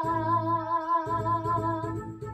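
A girl singing solo, holding one long note with vibrato over piano accompaniment. The note ends just before the close, and a lower piano note changes about halfway through.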